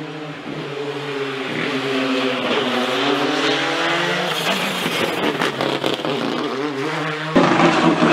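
Hyundai i20 R5 rally car's turbocharged four-cylinder engine at competition speed, its note repeatedly rising and falling through gear changes and lifts, with a run of sharp cracks around the middle. Near the end the sound cuts abruptly to another, louder car engine.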